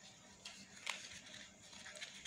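Faint handling sounds of a folded paper filter being fitted into a small plastic funnel: soft rustles with a few light clicks, the sharpest about a second in.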